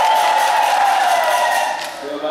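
Many voices of a church congregation together with hand clapping, loud and dense, easing off near the end.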